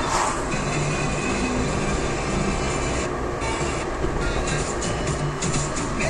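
Music from a car radio playing inside a moving car, over steady road and engine noise.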